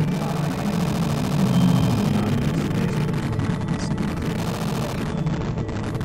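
Modular synthesizer improvisation giving out a steady, low, noisy drone, dense and without a beat.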